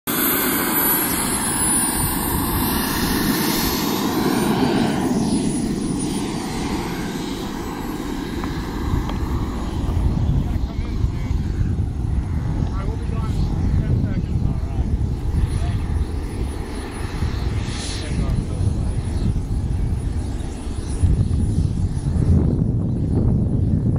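Turbine engine of a radio-controlled King Cat model jet whining at a high pitch as the jet taxis, the pitch falling over the first few seconds and then holding steady, over a low rumble.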